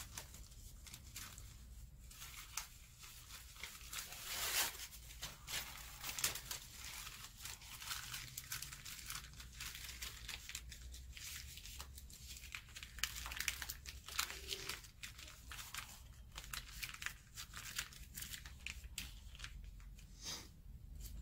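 White paper strips rustling and crinkling as they are handled by hand, in irregular crackles with a few louder ones around four to six seconds in and again near thirteen seconds.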